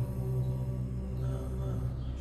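Background music: a low, steady drone of sustained tones.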